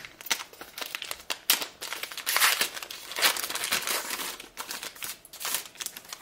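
A trading card booster pack wrapper being crinkled and torn open by hand. It makes an irregular crackling rustle with several louder bursts.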